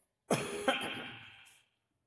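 A man clearing his throat close to a microphone: a sudden harsh sound about a quarter second in, with a second push half a second later, fading out over about a second.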